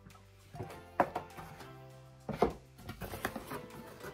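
Tropical house background music playing softly, with a few sharp knocks and rustles of a cardboard gift box and its packaging being handled, the loudest about a second in and again just past the middle.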